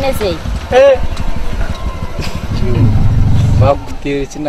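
Short phrases of conversation over a low, steady rumble of a motorcycle engine idling; the rumble grows stronger in the second half.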